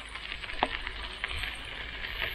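Mountain bike with knobby tyres rolling over a dirt road: a low rumble with faint crunching from the tyres, and a single sharp click about half a second in.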